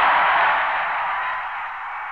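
Football stadium crowd cheering a touchdown, a steady roar that slowly dies away.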